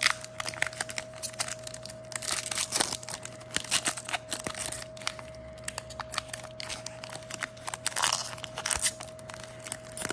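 Foil Pokémon booster-pack wrapper crinkling and crackling in the fingers as its stubborn crimped seal is worked at, until the foil tears open.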